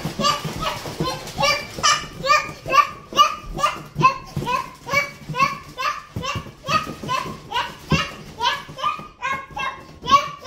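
A young child's voice repeating a short, high syllable over and over in a steady rhythm, about two to three times a second, with a few soft thumps in between.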